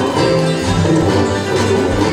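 Bluegrass band music with a plucked banjo and a steady bass line, played over the show's sound system.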